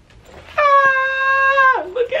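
A voice singing one held high note, steady for about a second and then sliding down in pitch as it ends.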